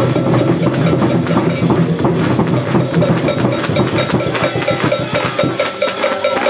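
A football team's huddle keeping a fast, even rhythm of claps or stomps, with steady tones underneath.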